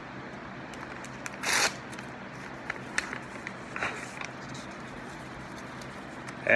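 Paper handling as an envelope is opened: small crackles and rustles, with one louder, brief rasp about a second and a half in, over a steady low hum.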